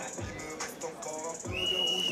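Background music with a beat and a high note held over the last half second.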